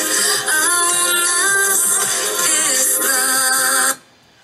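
A woman singing a slow ballad over instrumental backing, holding long notes with smooth glides between them, played back from a televised talent-show performance. It cuts off suddenly at the end.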